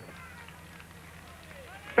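Faint outdoor background of a televised road race during a pause in the commentary: a steady low hum with faint, distant voices.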